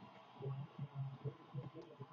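Faint handling noise: soft, irregular low thuds, a few a second, with light rustling as trading cards are handled close to the microphone.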